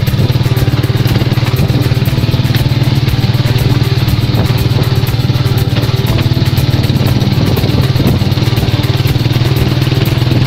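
The motorcycle engine of a tricycle runs steadily at cruising speed, heard from inside its covered sidecar as a loud, even low drone with a fast pulse.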